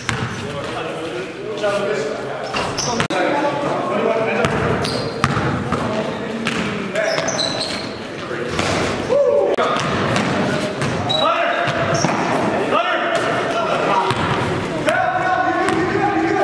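Basketball dribbled on a gym floor in a large hall, with repeated ball bounces and players' voices calling out across the court.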